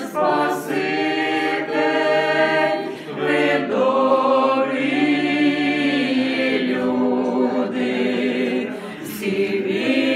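A small amateur group of women's and men's voices singing together a cappella, in long held phrases with short breaks about three seconds in and near the end.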